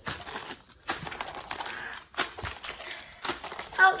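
Plastic candy wrappers crinkling and rustling in irregular crackles as hands rummage through a pile of wrapped candy.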